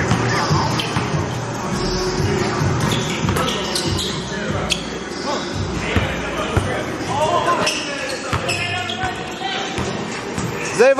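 Basketballs bouncing on a hard gym floor during play, a run of dull thumps ringing in a large hall, with voices around them.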